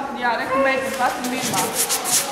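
A high voice calling out in a large, echoing hall, then brisk rubbing noises near the end, as of hands rubbed together.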